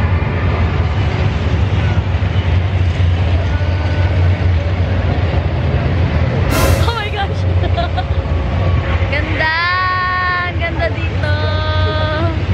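Busy outdoor theme-park ambience with a steady low rumble. A sharp hissing burst comes about six and a half seconds in, and near the end a high-pitched voice cries out in two long held notes.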